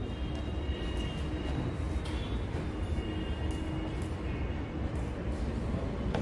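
Steady low rumble of room background noise, with faint high tones and a few light clicks.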